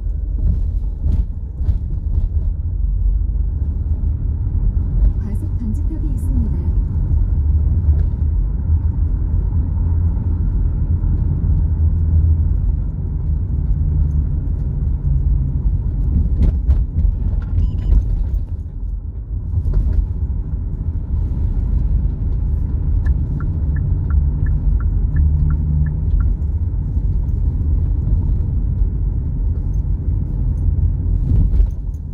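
Car driving in city traffic: a steady low rumble of engine and road noise, with a short run of quick, regular ticks a little after twenty seconds in.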